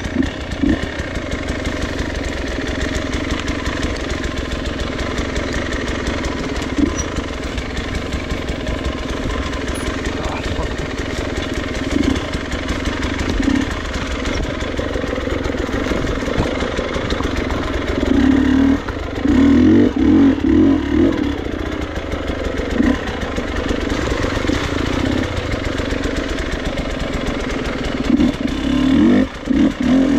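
Off-road motorcycle engine running at low trail speed, heard from the bike itself. The throttle opens in louder bursts a little past the middle and again near the end.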